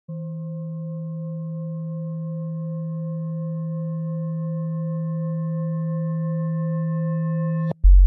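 A single steady low drone tone with a few faint higher overtones, held and slowly swelling louder for over seven seconds, then cutting off suddenly. Right at the end a loud, deep bass sound comes in.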